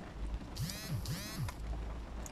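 A phone notification sound for incoming WhatsApp messages: two short swooping electronic tones, about half a second each, starting about half a second in.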